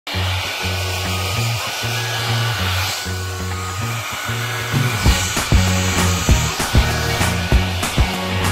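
A hair dryer blowing steadily, under background music with a repeating bass line; a drum beat comes in about five seconds in.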